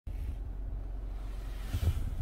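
Steady low rumble of a car driving, heard inside the cabin, with a short knock near the end as the phone recording it is moved.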